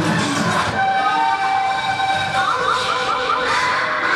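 Train horn sound effect in a dance backing track: sustained horn tones start about a second in, over continuing rail-like noise.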